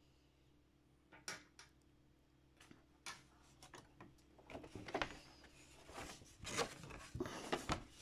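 Paper being handled and shifted at a sewing machine: faint, irregular rustles and small clicks that become busier about halfway through, over a faint steady hum.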